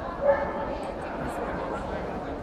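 A dog gives one short, loud bark about a quarter second in, over the chatter of people around the ring.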